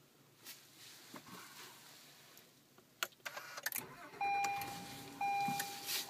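2013 Acura RDX's V6 being started by its push button: a click about three seconds in, then the engine cranks, fires and runs. Just after it catches, a steady electronic beep tone from the car starts, with one short break.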